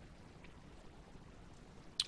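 Faint chewing of juicy pineapple chunks, with a soft tick about half a second in and a sharp mouth click at the very end.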